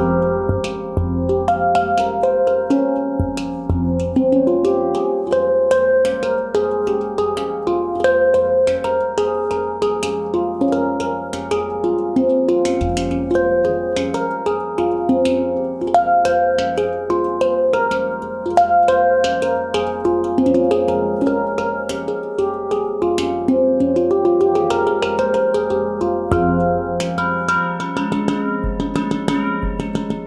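Mini handpan with an F2 centre note, made by Leaf Sound Sculptures, played with the fingertips in a quick improvisation: rapid strikes on the tone fields ring on and overlap, with the deep centre note sounding now and then.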